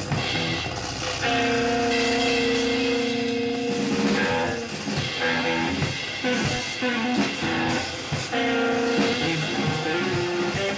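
Live free-improvised music: long held guitar tones over scattered drum and percussion hits, one long tone about a second in and another near the end.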